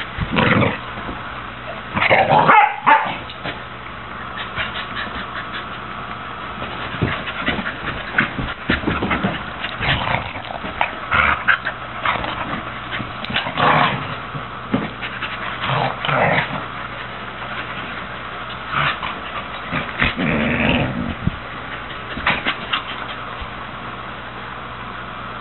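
A red heeler pup and a beagle mix play-fighting. Their short vocal noises come in irregular bursts every second or two, loudest a couple of seconds in and again about twenty seconds in.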